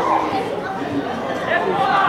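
Chatter of several voices talking and calling over one another, from spectators and players around a football pitch.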